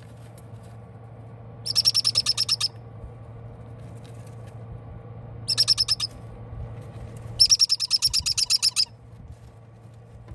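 Parrot chicks giving rapid pulsed chirping calls in three bouts of about ten pulses a second, the last bout the longest and loudest. A steady low hum runs underneath and stops about seven seconds in.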